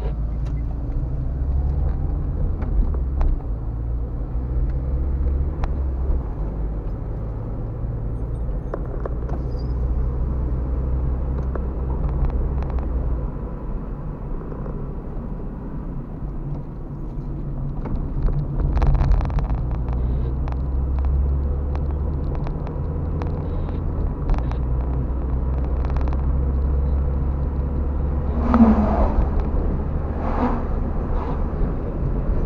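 Car driving, heard from inside the cabin: a steady low engine and road rumble that swells and eases with speed, with occasional light clicks. Near the end a heavy truck passes in the opposite direction, briefly louder.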